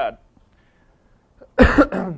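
A man coughs twice in quick succession, loudly, about one and a half seconds in.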